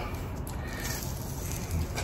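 Faint handling sounds of a plastic tub of stain-remover powder as its snap lid is pried open, with a couple of small soft ticks near the start.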